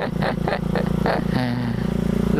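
Small sport motorcycle's engine running at a steady pace while being ridden, heard from the rider's seat, with wind rushing past the microphone. Short vocal sounds come over it in the first second.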